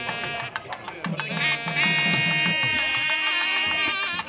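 A reedy wind instrument plays long held notes with many buzzing overtones, over scattered drum strokes, in the style of South Indian temple music.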